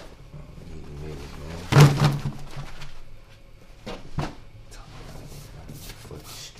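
Bundles of banknotes and other objects being set down and handled on a wooden table: a loud thump about two seconds in and a smaller knock about four seconds in, over a low hum.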